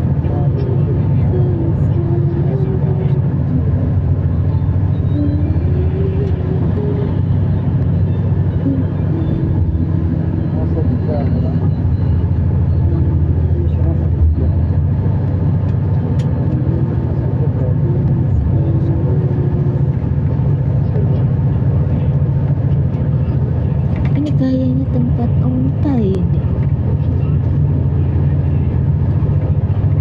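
Steady low drone of engine and road noise inside a road vehicle moving at highway speed, with voices talking over it throughout and a little louder near the end.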